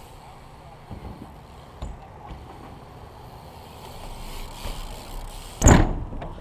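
BMX bike tyres rolling over a concrete skatepark surface, a low steady rumble, with a few faint ticks and then one loud thump shortly before the end.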